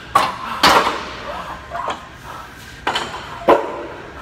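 Sharp metal clanks of weight plates on a plate-loaded leg press, about four knocks, the loudest about half a second in.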